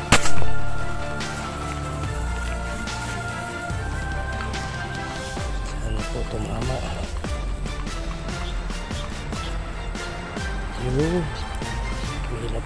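A single sharp shot from an air gun just after the start, the loudest sound here, dying away within about a second, over steady background music.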